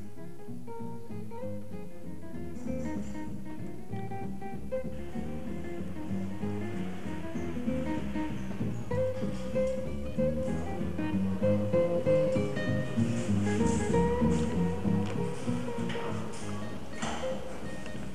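Instrumental background music led by guitar, growing fuller about five seconds in.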